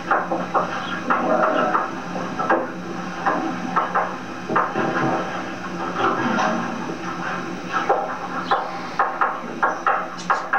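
Indistinct, overlapping voices in a classroom, with a steady low hum underneath.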